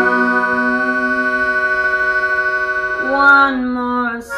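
Melodica holding a sustained, steady chord, then moving to a new chord about three seconds in.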